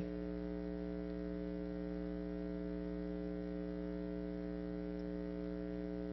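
Steady electrical mains hum, a low buzz made of several even tones, with no other sound.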